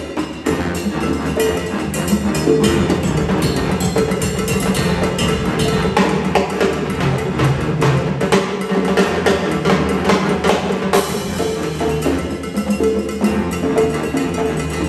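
Live big band playing a salsa arrangement: a saxophone and brass section over congas, drum kit and a busy percussion rhythm of sharp strokes.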